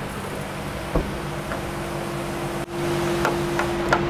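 Steady mechanical hum with no speech. A higher steady tone joins it about a second in, just after a single sharp click. The background grows louder past the halfway point, with a few light ticks near the end.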